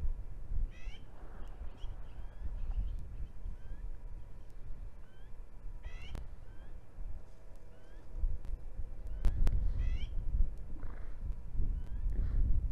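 Outdoor ambience with wild birds calling: short rising chirps repeated every second or so, and a rippling trill about every four to five seconds. Underneath is a steady low rumble, with a few sharp clicks near the middle and toward the end.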